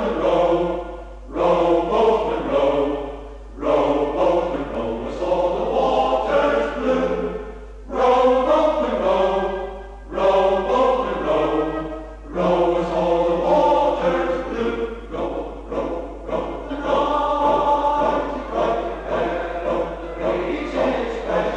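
Male voice choir of fishermen singing a hymn-like song in full harmony, in phrases a few seconds long with short breaks between them. A steady low hum runs underneath, from the 1973 cassette recording.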